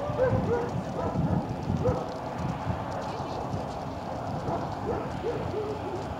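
A dog yipping in the background, in quick runs of three or four short high yips: one run at the start, a single yip about two seconds in, and another run near the end.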